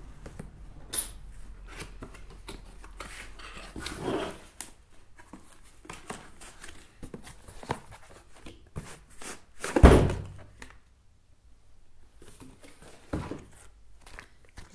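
A cardboard box and the plastic packaging inside being handled and opened, with scattered short scrapes, clicks and rustles. One loud thump comes a little under ten seconds in, and a smaller knock a little after thirteen seconds.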